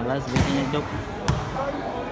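A volleyball struck twice during a rally, two sharp smacks just under a second apart, with spectators' voices in the hall.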